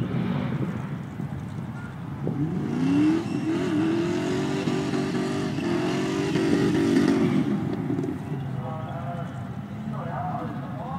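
A car engine revving hard: its note climbs steeply about two seconds in, holds at high revs for about five seconds, then drops away, as a ute drives flat out across a dusty grass arena.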